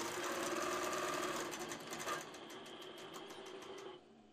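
INNOVA longarm quilting machine under AutoPilot computer control, stitching at a rapid, even rate of needle strokes. It gets quieter and the strokes space out about halfway through, and the stitching stops near the end as the pattern reaches the centre of the block.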